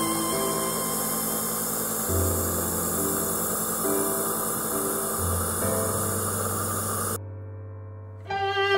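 Slow background music with long held notes over a steady hiss from a jet nebulizer that is misting medication into a tracheostomy mask. The hiss cuts off about seven seconds in, leaving only quiet music.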